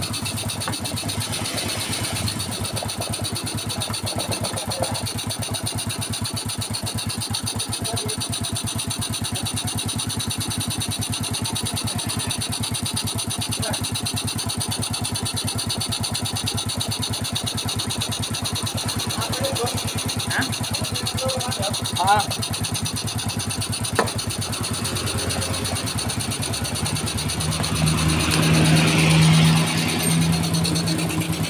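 Yamaha Mio Soul scooter's single-cylinder four-stroke engine, fitted with a Supra carburettor and running without an air filter, idling steadily. It grows louder for the last few seconds.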